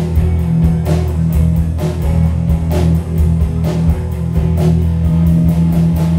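Live rock band playing an instrumental passage: electric guitars and bass over a drum kit keeping a steady beat.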